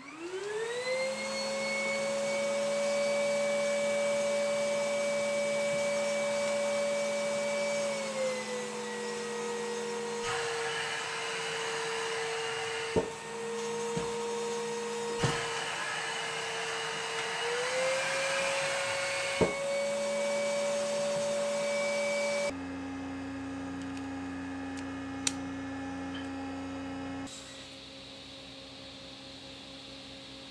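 Starmix shop vacuum switched on: its motor spins up quickly and runs with a steady whine. Its pitch drops for several seconds in the middle and comes back up, with a few sharp knocks along the way. Near the end it gives way abruptly to a lower, steady hum.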